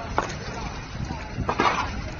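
Indistinct voices of people outdoors over a steady low rumble, with a brief louder burst near the end.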